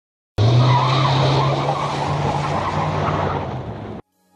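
Tyre-squeal sound effect, a loud screech with a steady low drone beneath it. It starts suddenly about half a second in, fades a little, then cuts off suddenly.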